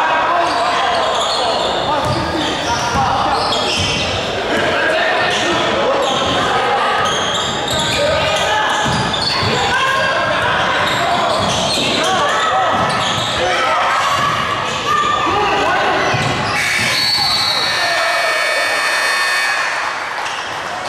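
Basketball game on a hardwood gym floor: the ball bouncing amid players' and spectators' voices, echoing in the large hall.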